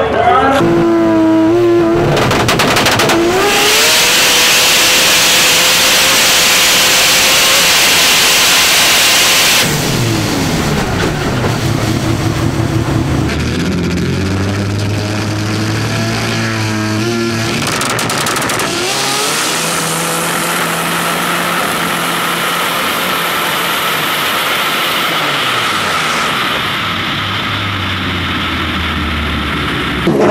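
Turbocharged 20B three-rotor engine of a drag car running hard at high revs. About ten seconds in it falls away with falling pitch, then runs on at lower revs, rising again a few seconds later.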